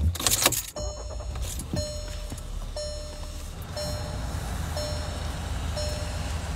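A car starting up with a short clatter, then a steady low hum as an inflatable Santa's blower fills it, while the car's warning chime dings about once a second.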